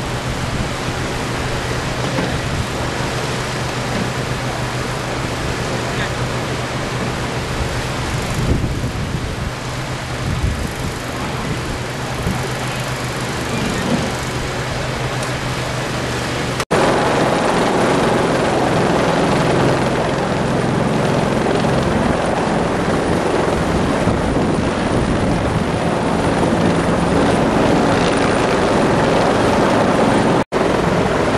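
Steady engine drone at a rescue site, with a low hum throughout. After a sudden cut a little past halfway it comes back louder and rougher.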